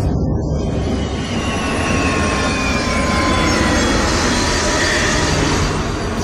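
Movie sound effects of a machine war: a loud, steady low rumble with a thin high whine that slowly falls in pitch over the first few seconds, like a flying war machine passing.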